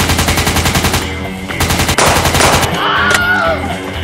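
Rapid automatic gunfire, a fast string of shots that stops about a second in. Later comes a short noisy burst, then a brief wavering cry.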